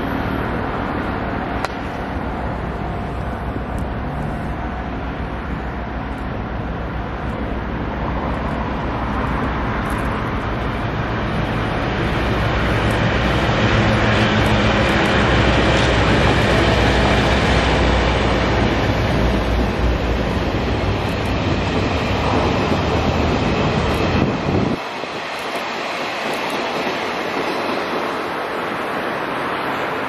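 A Taiwan Railway freight train headed by three diesel locomotives passing. The diesel engine drone builds as it approaches and is loudest midway, as the locomotives and wagons go by. The low rumble drops away suddenly about 25 seconds in, leaving a fainter rushing noise.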